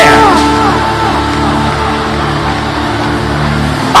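Background music: sustained keyboard chords held steady, with no speech over them until a voice returns at the very end.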